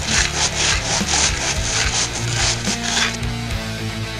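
Rhythmic rasping scrapes on asphalt, about three strokes a second, like sawing, that stop about three seconds in. Music plays underneath throughout.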